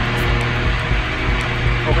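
Electric fan blowing straight at a Boya BY-MM1 on-camera microphone fitted with its furry dead-cat windscreen: a steady rush of wind noise with a low hum beneath it.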